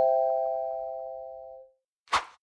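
A chord of three bright chime notes, struck in rising order just before and ringing on together, fading away steadily over about a second and a half. It is a logo jingle for an end screen.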